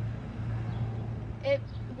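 A steady low motor hum, with one short spoken word about one and a half seconds in.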